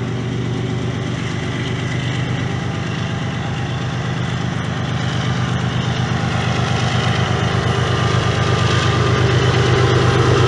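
Two GE diesel-electric freight locomotives, led by a BNSF ES44C4, running as they approach, their engines a steady low drone that grows steadily louder as the units draw near.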